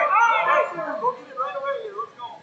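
Loud, high-pitched shouting from people at the mat, in short breaking calls that die away near the end.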